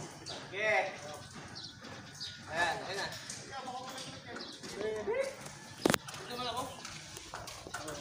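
Background talk of several people, not clearly worded, with one sharp knock about six seconds in.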